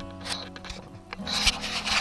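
Rubbing and scuffing noise, growing louder and rougher about a second in, over steady background music.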